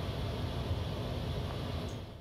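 Steady flight-deck noise of a Boeing 737 MAX in flight: an even rumble and hiss of airflow, with a few faint steady tones.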